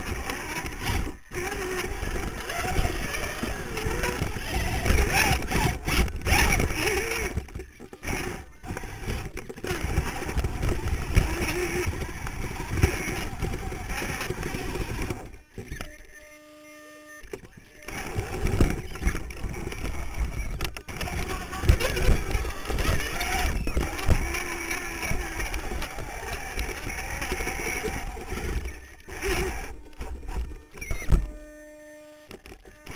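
Onboard sound of an RC rock crawler driven by dual Holmes Hobbies 35-turn brushed motors: electric motor and gear whine rising and falling with the throttle, with rumble and knocks from the chassis and tyres on rock and indistinct voices of people nearby. The driving sound drops away for about two seconds near the middle, then resumes.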